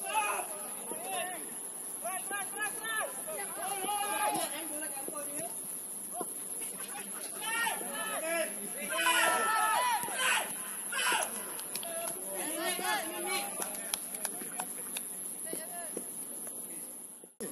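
Footballers' voices shouting and calling to each other across the pitch during play, loudest and most urgent about halfway through.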